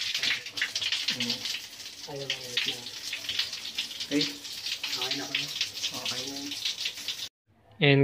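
Water running steadily from a shower supplied by a newly installed instant electric water heater on its test run, a continuous hiss, with faint voices underneath. It cuts off suddenly about seven seconds in.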